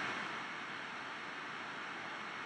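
Steady faint hiss of a low-quality microphone picking up background noise, with no other sound.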